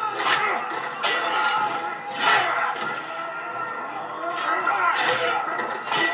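Men shouting over sustained dramatic film music, with a few sharp hits, played from a television soundtrack.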